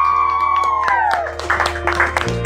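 A group of children cheering: one long, high shout that falls away about a second in, followed by a few hand claps. Background music plays underneath.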